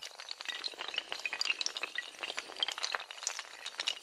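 Clattering sound effect of a long chain of small hard tiles toppling like dominoes: a dense, continuous run of quick, sharp clicks and clinks.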